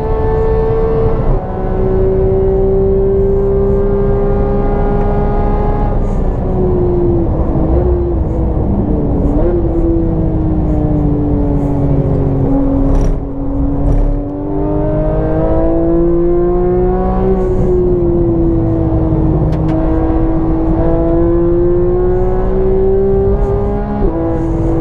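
Porsche 911 GT3's 3.8-litre flat-six heard from inside the cabin under hard driving. The engine note dips briefly about a second in, falls steadily for several seconds as the car slows, then climbs again under acceleration with a short break partway.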